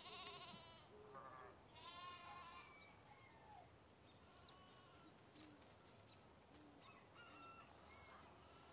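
Faint animal calls in the background: several wavering, pitched calls in the first three seconds, then scattered short chirps and whistles.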